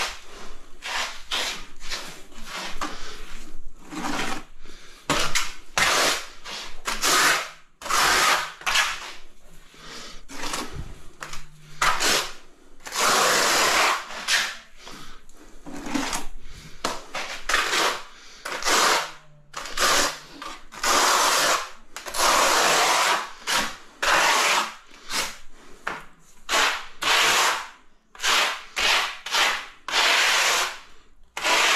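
A tiler's trowel scraping and spreading a sand-and-cement mortar bed in repeated strokes, some quick and short, some drawn out for a second or more, as low spots in the bed are filled and levelled.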